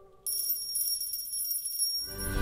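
The choir's last chord dies away. About a quarter second in, a high, steady, bell-like ringing with a quick shimmer starts: the opening of the TV station's ident sound effect.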